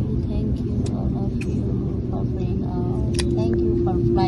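Steady low rumble of a jet airliner's cabin, with faint passenger voices over it; a steady hum joins about three seconds in.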